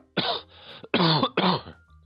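A man coughing and clearing his throat, three short bursts in quick succession.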